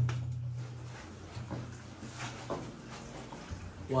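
Footsteps and scuffs in an old mine passage: faint, irregular soft knocks a second or so apart, over a low steady hum.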